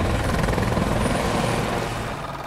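AH-64 Apache attack helicopter running on the ground, its rotor and engines making a steady noise that eases slightly near the end.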